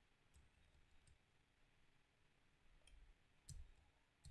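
Near silence with a few faint clicks of a computer mouse advancing presentation slides; the loudest click comes near the end.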